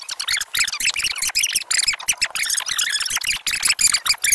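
Fast-forwarded speech from a recording, pitched up into rapid, high, squeaky chatter.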